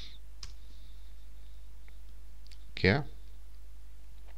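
A computer keyboard keystroke, the Enter key pressed to run a command, about half a second in, followed by a few faint clicks, over a steady low hum.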